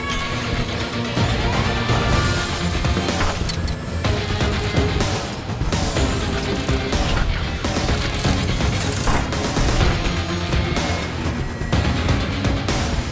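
Film score music layered with mechanical sound effects of robotic arms fitting metal armour plates: repeated sharp metallic clanks and a rising mechanical whir about a second in.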